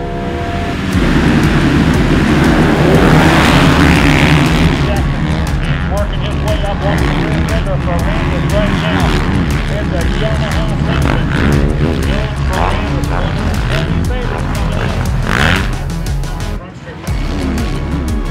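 A pack of 450-class motocross bikes revving hard together off the start and racing on, loudest in the first few seconds, with engine pitches rising and falling as the riders shift and throttle. Background music plays under them.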